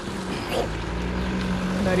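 A man's voice holding one drawn-out hesitation sound mid-speech, over a low, steady rumble.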